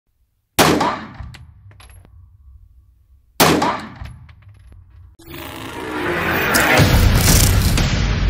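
Two pistol shots about three seconds apart, each echoing off the walls of an indoor shooting range. From about five seconds in, music swells up and grows loud.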